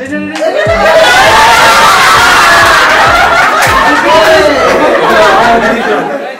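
Several voices talking and laughing loudly at once in playful commotion, opening with a short "no, no".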